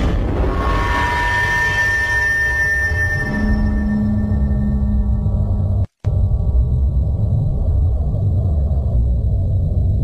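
Horror sound effect: a sudden loud, deep rumbling drone with ringing, gong-like tones that fade over the first few seconds. A steady hum joins about three seconds in, the sound cuts out for an instant near the middle, then the rumble carries on.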